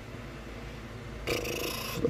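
Quiet room tone with a low steady hum; about a second and a half in, a short breathy noise, a person breathing out.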